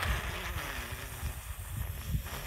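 Wind buffeting the phone's microphone: an uneven low rumble under a steady hiss.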